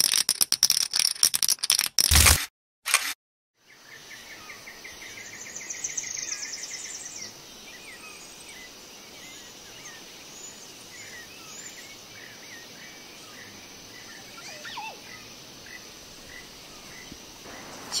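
Rapid clicking and rattling sound effects for about the first two and a half seconds, then, after a brief silence, outdoor birdsong: a fast run of repeated chirps for about three seconds, followed by scattered single chirps over a steady high drone.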